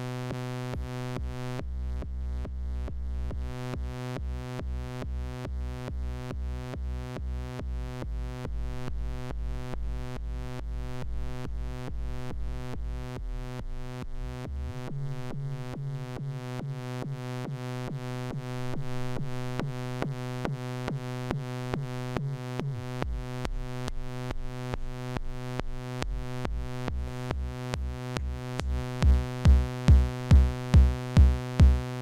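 Eurorack modular synthesizer patch running through a Cosmotronic Messor compressor. A sustained synth drone is ducked in a steady rhythm by sidechain compression, which gives a pumping effect. Near the end, loud low thumps about two a second come in.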